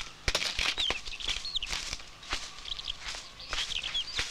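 Small birds chirping in short calls, with irregular knocks and scuffs on dry dirt ground.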